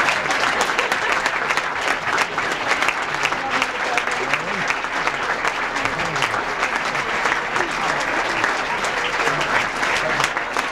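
Audience applauding steadily, a dense patter of many hands clapping throughout.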